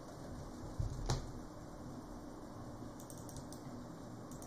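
A few clicks of a computer mouse at a desk: one sharper click with a soft low bump about a second in, then a quick cluster of fainter clicks near the end.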